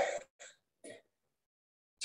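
A man clearing his throat: one short burst followed by two fainter ones within the first second.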